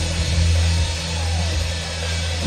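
Live rock band playing between vocal lines: electric bass holding a low note under the electric guitars and drum kit.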